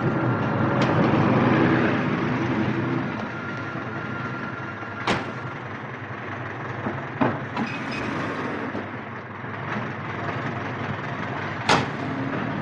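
A car's engine running amid street traffic noise, with sharp car-door clunks about five seconds in, again around seven seconds, and a louder one near the end.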